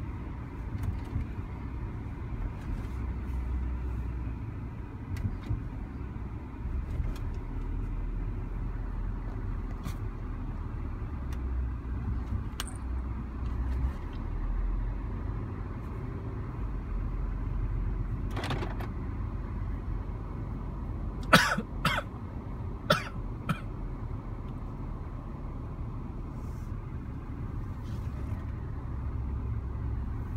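Car heard from inside the cabin while driving slowly: a steady low engine and tyre rumble. A handful of short, sharp sounds come about two-thirds of the way through, and they are the loudest thing heard.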